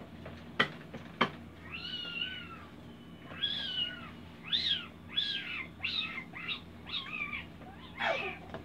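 A baby squealing in a run of high-pitched, arching cries: one longer cry about two seconds in, then shorter ones roughly every half second. Two sharp clacks come about a second in, before the squeals.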